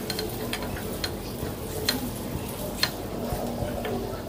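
Hot oil sizzling in a frying pan with spiny gourd pieces and dried red chillies, a wooden spatula giving a few light clicks against the pan as the fried pieces are lifted out.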